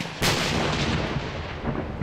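A single loud blast about a quarter second in, its rumble dying away slowly over the next two seconds.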